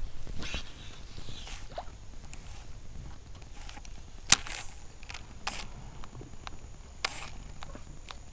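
Light scattered clicks and knocks from a baitcasting reel and rod being handled, the sharpest click about four seconds in.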